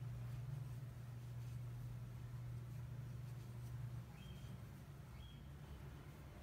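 Quiet room with a steady low hum that drops away about four seconds in, and two short faint high tones near the end.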